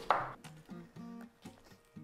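Soft background music with a few sparse held notes. At the very start comes a short crunch as the raw cauliflower head is cut in half.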